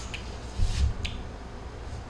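A pause between words filled with low rumbling background noise, with a faint click near the start and a brief low swell about half a second to a second in.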